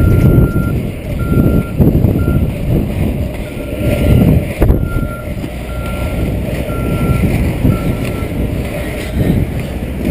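A vehicle's reversing alarm sends out a series of steady high beeps, each about half a second long, that stop about eight seconds in. Under the beeps runs a continuous rumble from inline skate wheels rolling on asphalt, with wind on the microphone.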